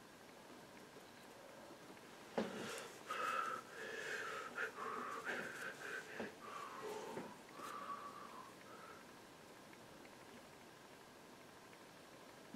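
Soft, breathy whistling under the breath: a few wavering notes that step up and down in pitch for about six seconds, starting just after a light click about two seconds in.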